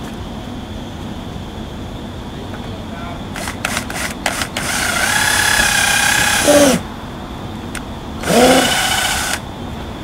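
Cordless drill with a 1/8-inch bit drilling holes into a boat's deck edge: a few light clicks, then the motor runs for about two seconds and winds down in pitch, then a shorter run near the end that rises in pitch as it spins up.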